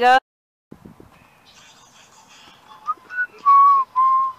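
A person whistling a short run of notes, two quick ones and then a longer held note, starting about three seconds in, over faint outdoor background.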